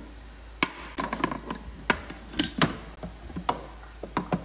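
Light, irregular knocks and clacks of toy cookware and play-kitchen parts being handled and set down on a wooden toy kitchen, about seven separate knocks.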